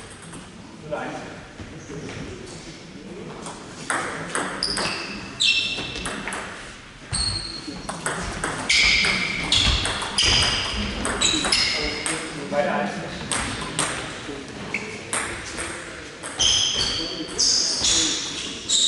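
A table tennis ball being hit back and forth in a doubles rally: short, sharp clicks of the plastic ball on the bats and table, one after another. A rally runs from about four seconds in to about eleven seconds, and another starts near the end.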